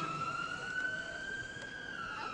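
A siren wailing: one long tone that rises slowly in pitch and starts to fall near the end.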